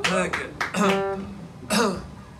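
Steel-string acoustic guitar strummed in several short, separate chords that each ring briefly and die away.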